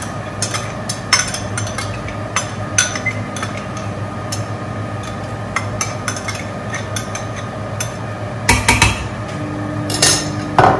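A metal spoon clinking and tapping against a steel cooking pot and bowl as red palm oil is spooned into the soup, with a steady low hum underneath. A quick run of louder knocks comes near the end.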